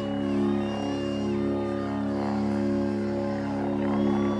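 Instrumental intro music: a steady low sustained drone chord, with thinner high tones gliding in and out above it.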